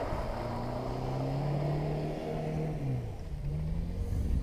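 A distant off-road vehicle's engine revving as it drives through muddy water. The engine note climbs steadily, drops about two to three seconds in, then climbs again.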